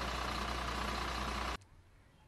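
Diesel engine of a Mercedes-Benz refuse truck idling steadily, with a low drone and a higher steady whine. It cuts off suddenly about a second and a half in.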